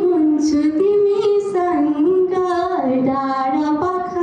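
A young woman singing a slow melody into a handheld microphone, holding long notes that step up and down in pitch.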